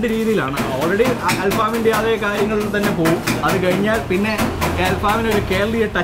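Men talking over one another in conversation.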